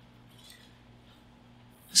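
Quiet pause with a steady low electrical hum and faint room tone, and a faint short paper rustle about half a second in; a man's voice starts at the very end.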